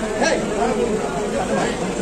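Several people talking over one another at once: overlapping crowd chatter.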